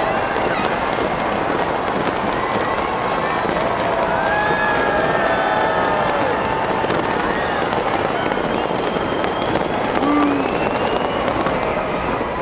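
A New Year fireworks display fired from a city tower, crackling and popping in a dense, continuous barrage, with shouts and whoops from a watching crowd over it.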